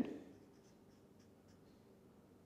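Felt-tip marker writing on paper: a few faint, short strokes.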